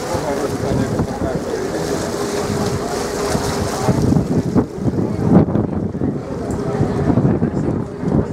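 Passenger ferry under way: its engine runs with a steady hum under a constant rush of wind across the microphone.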